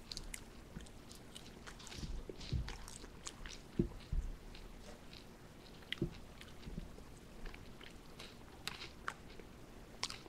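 Close-miked chewing of a bite of fried chicken thigh with its skin: irregular wet mouth clicks and smacks, with a few soft low thumps scattered through.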